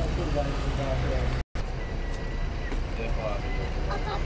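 Low, steady rumble of buses idling at their stands, with a voice talking over it. The sound drops out completely for a moment about a second and a half in.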